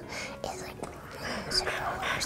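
Faint whispering, a soft breathy voice with no clear words.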